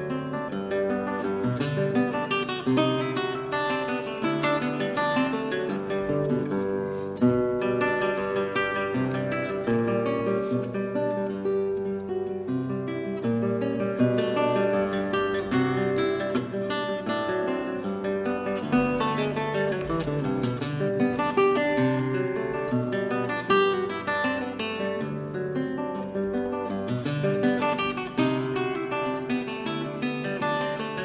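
Solo classical guitar played fingerstyle on a small-bodied guitar. A continuous passage of plucked melody notes over bass notes and chords.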